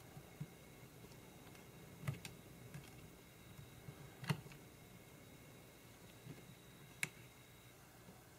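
A handful of faint, scattered clicks and light taps from a fine Phillips screwdriver and tiny screws at the metal back plate of a Sony a5100's display panel, as the screws are being taken out. The sharpest click comes about four seconds in.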